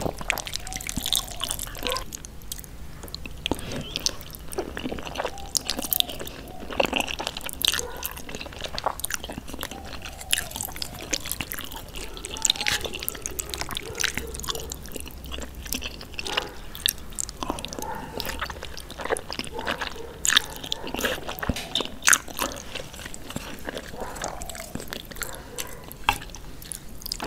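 Close-miked eating sounds of jajangmyeon (black bean sauce noodles): irregular wet, sticky clicks and smacks of chewing, along with wooden fork and spoon working through the saucy noodles.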